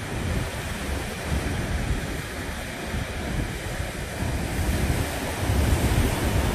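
Sea surf breaking on a rocky shore, a steady rush of water, with wind buffeting the microphone in low gusts; it swells a little near the end.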